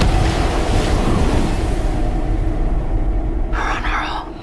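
Film-trailer sound design of explosions over a city: a loud, continuous rumble of noise with a faint low drone beneath it.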